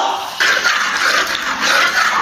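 Rock sugar frying in hot oil in a large cast-iron wok, sizzling in a steady hiss that starts suddenly about half a second in while a ladle stirs it. This is the first stage of cooking the sugar down to a caramel colour for a braise.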